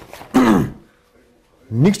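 A man's voice: one short, loud utterance with a falling pitch a third of a second in, about a second's pause, then speech again near the end.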